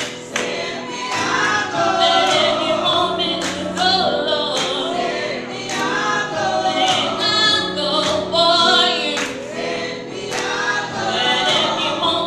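Small church vocal group singing a gospel song in parts, with instrumental accompaniment holding low notes and short sharp beats through it.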